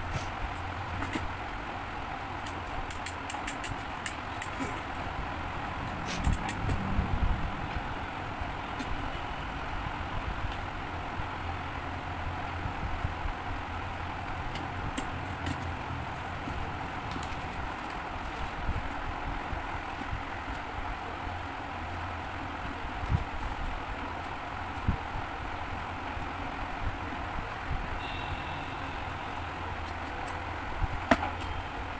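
Steady background hiss and low hum, with scattered light clicks and scrapes as a cardboard tube is handled and cut with a snap-off utility knife; a quick run of clicks comes a few seconds in.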